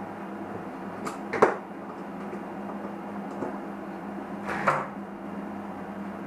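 Steady low hum with two short knocks, the louder about a second and a half in and another near five seconds, as a 12-volt water pump is first powered from its power supply and spurts water.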